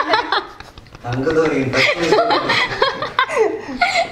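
Several people laughing together, with a few words among the laughter and a brief lull about a second in.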